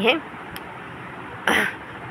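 A woman's spoken word ends, and after a pause she clears her throat once, briefly, about a second and a half in.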